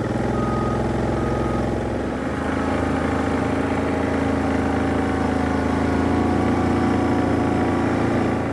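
Four-wheeler (ATV) engine running steadily while being ridden. The engine note shifts slightly about two seconds in.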